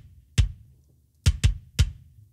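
Soloed kick drum microphone track from a live drum kit recording, unprocessed: one kick hit, then three quick hits close together in the second half.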